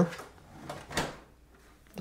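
The HP OfficeJet Pro 9125e's plastic top cover (the scanner unit) is lowered shut. There is a soft shuffle, then a single clack as it closes about a second in.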